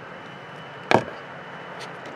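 A single sharp click about a second in, over a steady low hiss.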